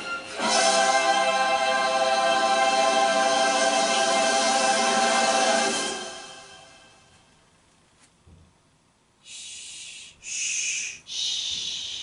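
Choral singing with accompaniment from a VHS promo, played through a TV's speaker, holding a chord and fading out about six seconds in. After a near-silent gap come three short hisses in quick succession.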